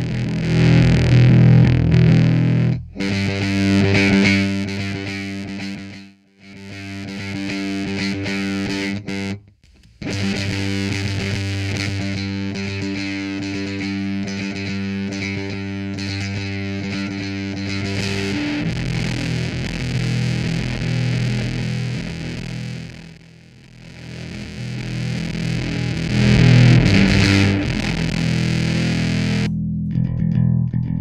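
Electric bass played through an MXR Classic 108 Fuzz Mini fuzz pedal into a clean bass amp: long, sustained fuzzed notes with a few short breaks between phrases.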